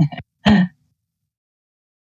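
A person clearing their throat in two short bursts about half a second apart.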